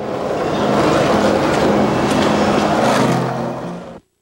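City street traffic noise, a steady wash of passing vehicles, that fades out near the end.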